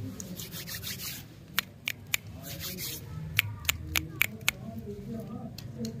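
Plastic lollipop wrappers crinkling as they are handled: a rustle over the first three seconds, then a run of sharp crackles.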